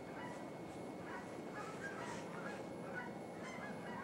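A flock of birds calling in the distance: many short calls, overlapping and scattered, over a steady background hiss.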